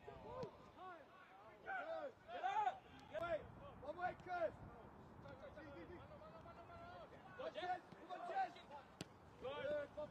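Players shouting short calls to each other across a football pitch, with gaps between the shouts, and one sharp knock near the end.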